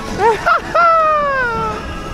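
A person's high-pitched voice: two short rising calls, then one long call that slides down in pitch.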